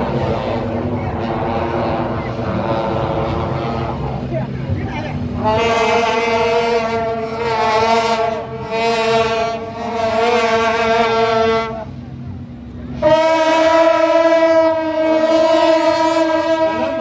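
Shaojiao, the long brass horns of a Taiwanese temple-procession horn troupe, blown together in two long steady blasts: the first begins about a third of the way in and lasts about six seconds, the second, louder and on a different note, starts near the end.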